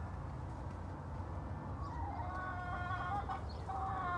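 A game fowl chicken giving a drawn-out clucking call starting about halfway through, then a shorter call near the end, over a steady low background rumble.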